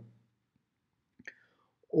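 Near silence in a pause between a man's spoken sentences, broken only by a faint, short sound about a second in; his speech starts again at the very end.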